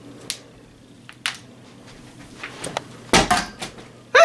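Light clicks and knocks, then a louder cluster of knocks and thuds about three seconds in: a plastic water bottle being knocked away and landing on the floor.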